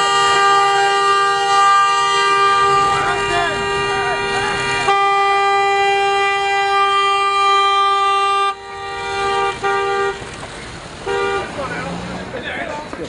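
Car horn held down in one long, steady blast that breaks briefly about five seconds in and cuts off after about eight and a half seconds, followed by two short toots near the end, with shouting voices over it.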